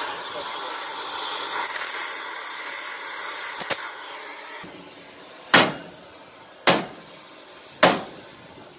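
Oxy-acetylene torch flame hissing steadily as it heats a pivot bracket on a Claas Variant 460 round baler, fading out about four to five seconds in. Then three sharp hammer blows on the baler's steel, a little over a second apart.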